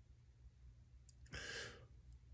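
Near silence with a faint low hum, broken once, a little past the middle, by a single short breath from the man speaking.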